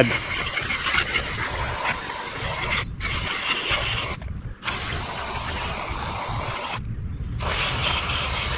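Aerosol mass air flow sensor cleaner hissing from a straw nozzle onto the sensor's element, in long sprays broken by three brief pauses, about three, four and seven seconds in.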